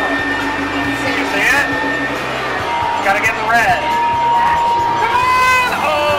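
Arcade game-room din: electronic music and held tones from the game machines over a background of voices.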